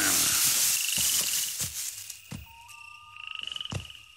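Cartoon night-forest sound effects: a loud rush of rustling noise for about the first second and a half, then a quiet backdrop with two short cricket-like chirping trills and a few soft ticks.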